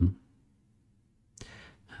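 The tail of a man's spoken word, then about a second of near silence. Near the end comes a short, faint breath, like a sigh or an intake before he speaks again.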